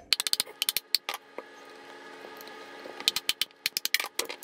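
Rapid sharp taps knocking on the hard shell of a whole coconut to crack it open. They come in two quick bursts, one just after the start and one near the end.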